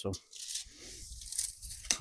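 Steel tape measure retracting: a long zipping whir that ends in a sharp click near the end as the hook snaps against the case.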